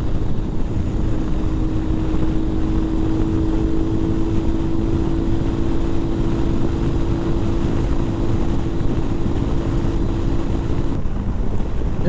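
Mondial RX3i Evo's single-cylinder engine running at a steady highway cruise under open throttle, under heavy wind rush on the microphone. It runs evenly, not yet misfiring on the last of its fuel. The steady engine hum cuts off suddenly about a second before the end, leaving the wind noise.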